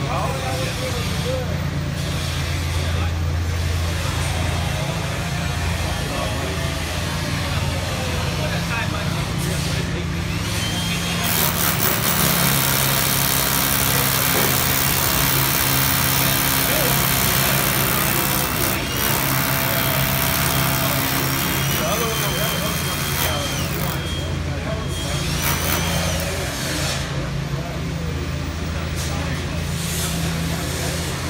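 Hammer drill boring overhead into the concrete-topped metal deck: a loud, harsh stretch of drilling starts about eleven seconds in and lasts some eight seconds, followed by more drilling with a thin high whine. A steady low machine hum runs underneath.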